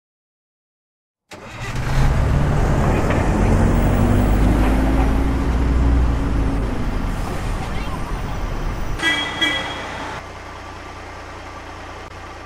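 Sound-effect bus engine running and driving, its note rising slowly, then a horn toot about nine seconds in, followed by a low steady hum.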